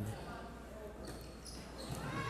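Faint sounds of a volleyball rally on an indoor hardwood court: ball contacts and players' footwork under the hall's echo.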